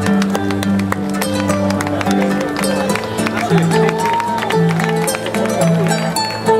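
Amplified Celtic harp playing a tune: a repeating pattern of low sustained notes under a higher plucked melody.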